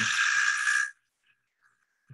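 Cordless power drill running steadily with a high whine as it bores into a limestone block, then stopping abruptly about a second in.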